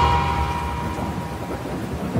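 The song's last held note trails off in reverb within the first second, leaving a steady ambience of rain and thunder.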